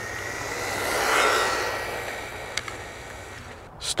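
MJX Hyper Go brushless RC car passing at speed on tarmac: a high, thin motor whine over tyre noise that swells about a second in and then fades away.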